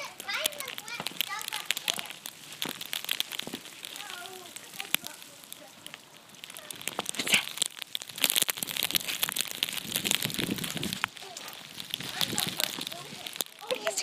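Snow crunching and crackling under paws and feet, a dense run of small irregular crunches that thickens about halfway through, with a few brief indistinct vocal sounds near the start.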